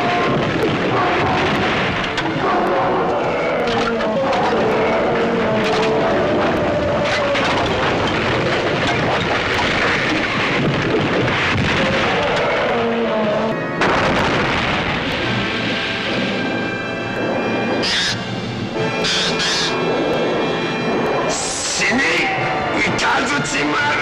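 Monster-movie soundtrack: dramatic music mixed with booms and crashing effects as giant monsters fight, with several sharp, high bursts in the last few seconds.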